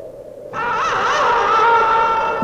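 Western film-score music: a low held tone, then a loud wind or brass phrase with a wavering pitch that comes in about half a second in and is held.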